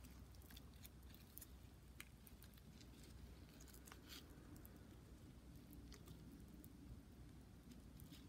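Near silence with faint, scattered crackles and rustles: fingers working through potting soil and tugging offsets off the base of a zebra haworthia.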